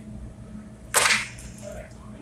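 Forklift engine idling with a steady low hum; about a second in, a single short, sharp rushing burst cuts in and dies away quickly.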